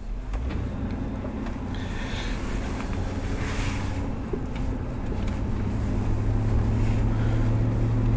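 A steady low engine-like hum with an even, unchanging pitch, growing slowly louder.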